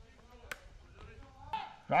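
Quiet outdoor ballfield ambience with one sharp click about a quarter of the way in. A man's commentary voice starts right at the end.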